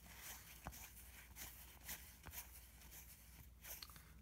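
Faint flicks and rustles of cardboard trading cards being thumbed through by hand, a few soft clicks spread across the quiet.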